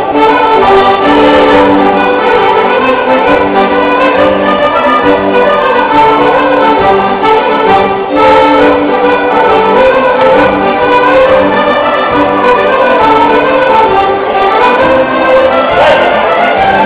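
Live Occitan folk band playing a sbrando, a traditional Occitan circle-dance tune, loud and without a break.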